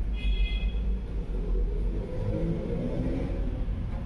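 A steady low rumble, with a drone that rises and then falls in pitch through the middle, and a brief high squeak just after the start.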